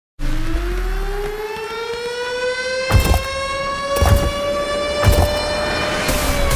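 A siren-like tone that starts suddenly and slowly rises in pitch throughout, with three deep thumps about a second apart in its second half.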